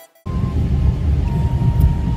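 Background music cuts off right at the start, and after a moment's silence comes the steady low rumble of a car heard from inside its cabin.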